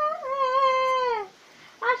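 A woman singing a Bengali song without accompaniment, holding one long note that bends downward and fades about a second and a quarter in. After a short breath, she starts the next phrase near the end.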